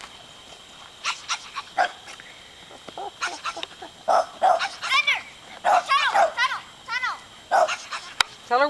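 A dog barking excitedly in a quick series of short, high-pitched barks through the second half, with people laughing.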